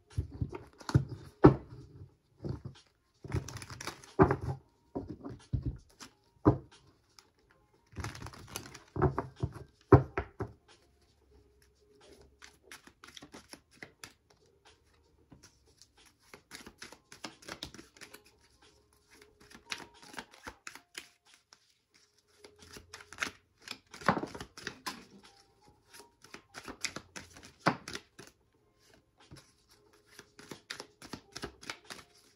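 Paper index cards being shuffled by hand, a rapid flicking and slapping of card on card. It comes in bursts, loudest through the first ten seconds and again late on, with softer handling of the cards in between as some are laid down on the table.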